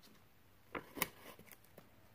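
Paper tape being peeled off watercolour paper: a few faint short crackles, the sharpest a tick about a second in.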